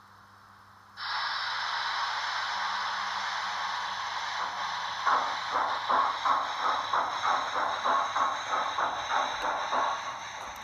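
Model steam locomotive sound decoder (Henning sound in a Roco 18 201) playing a steam hiss that starts suddenly about a second in, then exhaust chuffs from about five seconds in, about three a second, as the locomotive pulls away.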